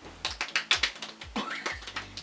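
Fingertips patting and tapping moisturizer into the skin of a face: a quick run of light slapping taps, over faint background music.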